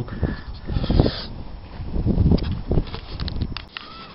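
Camera handling noise: irregular rustles and bumps on the microphone as the camera is moved, dying down near the end.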